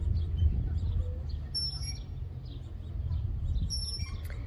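Birds chirping, with short high calls about a second and a half in and again near the end, over a steady low rumble.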